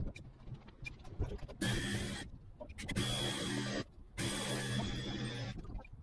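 Model aircraft engine being spun over in three short whirring bursts, each under a second and a half, during a start attempt. Between them are small handling clicks. The engine does not catch and run.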